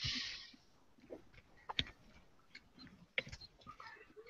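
Someone chewing Skittles close to a headset or desk microphone: a short hiss at the start, then scattered faint wet clicks and smacks of the mouth.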